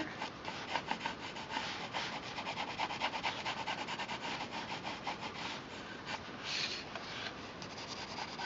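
Brown coloured pencil shading on paper: quick, repeated back-and-forth strokes of the lead rubbing the paper, a rapid dry scratching, with one longer stroke about six and a half seconds in.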